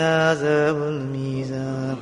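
A man chanting an Arabic supplication, holding one long drawn-out note that steps down slightly in pitch about half a second in.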